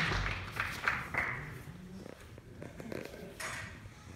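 Audience applause tailing off: scattered claps over the first second or so, then a quieter hall with a few isolated small knocks.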